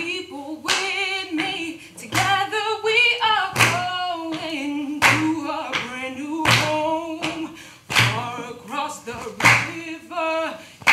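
A woman singing a song unaccompanied, with sharp hand claps keeping time about once every second and a half.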